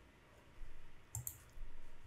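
Computer mouse clicks: a quick pair of sharp clicks a little over a second in, with soft low thumps around them.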